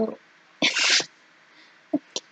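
A person sneezing once: a single short burst of breath noise, about half a second long, a little after the start.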